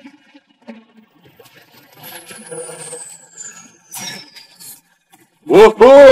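Cartoon sound effect: a thin high whistle sliding steadily down in pitch over about three seconds. Near the end comes the loudest sound, a short vocal cry from an animated character, its pitch rising then falling.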